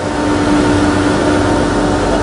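Steady machinery noise of a steel rolling mill line running, an even wash of noise with a steady hum through it.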